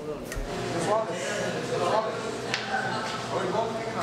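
Indistinct background talk in a large room: a few short, faint stretches of voice over a steady room hum.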